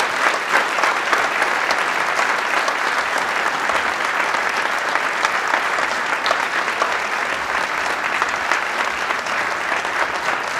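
A large seated audience applauding steadily, a dense patter of many hands clapping at once in a big hall.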